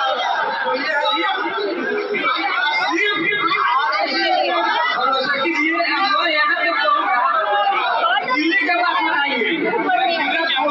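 Several people talking at once, their voices overlapping without a break.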